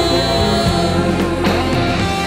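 A Korean adult-contemporary ballad performed with full band backing, electric guitar to the fore, with a woman singing the vocal line.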